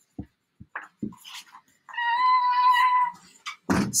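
Pages of a picture book being turned, with a few soft knocks. Then a high, steady pitched call is held for about a second, about halfway in.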